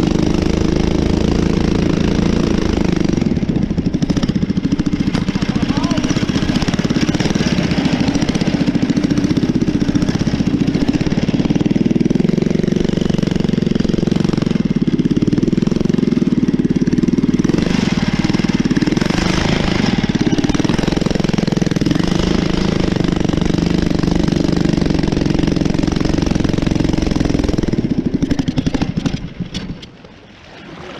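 A 212cc single-cylinder four-stroke engine driving a motorised kayak, running steadily at high throttle, with water rushing and splashing along the hull. The sound falls away near the end.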